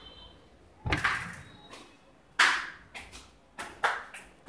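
A few separate knocks and thumps: a dull thump about a second in, the loudest sharp knock about two and a half seconds in, then lighter knocks near the end.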